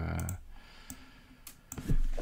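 A drawn-out spoken 'euh' trailing off at the start, then a few faint, scattered clicks from computer input as a block of text is selected.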